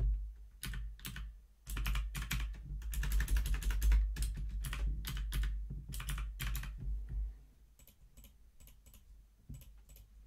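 Typing on a computer keyboard: a run of quick key presses, densest about three seconds in, thinning to a few fainter clicks over the last few seconds.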